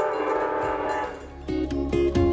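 A train horn sounding a steady chord of several notes, fading out after about a second. Acoustic guitar music starts near the end.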